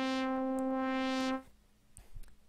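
Bitwig Polysynth holding a single synth note around middle C, its upper overtones swelling brighter and fading again as pen pressure opens and closes the filter cutoff. The note stops about one and a half seconds in.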